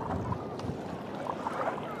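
Steady wash of sea water and wind around a tandem kayak being paddled, with faint distant voices.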